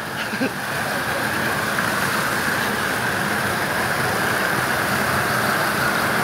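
Steady rushing of running water: an even, unbroken hiss with no rhythm.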